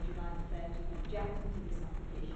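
Indistinct speech from someone in the room, over a steady low hum, with light clicks and rustles of paper being leafed through.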